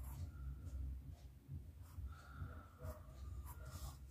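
Pencil scratching faintly on a book page in a few short strokes, drawing straight lines between printed dots.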